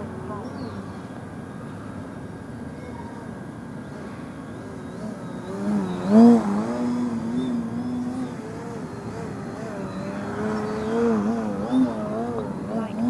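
Electric RC aerobatic plane's motor and propeller buzzing, the pitch rising and falling with the throttle. It is loudest about six seconds in as the plane passes low and close, with a smaller swell near the end.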